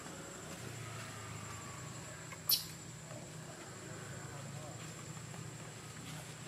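Faint, short, gliding squeaks of an infant macaque as it struggles in its mother's grip, over a steady low hum and a thin high whine. A single sharp click about halfway through is the loudest sound.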